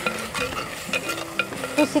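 Steel spoon stirring fenugreek leaves in a black clay pot over a wood fire, with repeated clicks and scrapes of the spoon against the pot over a faint steady sizzle of the leaves cooking.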